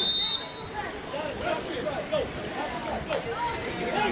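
A referee's whistle blows one short, high blast right at the start, over spectators chattering and calling out around the pool.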